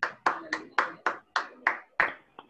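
Hand clapping in applause, steady sharp claps at about four a second.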